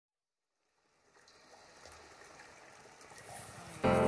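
Silence for about the first second, then a faint even hiss of outdoor background noise. Background music with sustained tones comes in suddenly just before the end and is the loudest sound.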